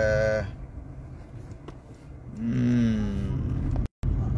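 A man's drawn-out hesitation sounds: a held vowel trailing off at the start, then about two and a half seconds in a long hum that slides slightly down in pitch. A steady low car-cabin rumble runs underneath, and the sound cuts out for an instant just before the end.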